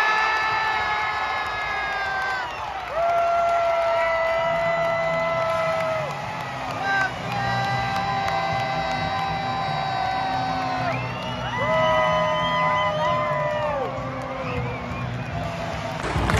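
Goal-celebration music over the stadium PA: a melody of long held notes, each sliding down in pitch at its end, with a crowd cheering underneath.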